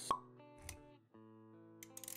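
Background music for an animated logo intro, held chords, with a sharp pop sound effect just after the start and a low thud a little over half a second in. The music drops out briefly around one second in, then comes back with a few light clicks near the end.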